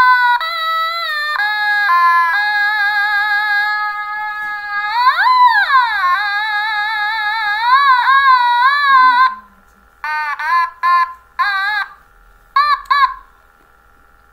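Otomatone electronic instrument playing a run of held notes that step between pitches, with a wide sweep up and back down in pitch about five seconds in and wavering notes after it. From about nine seconds it plays short, separate notes with gaps between them.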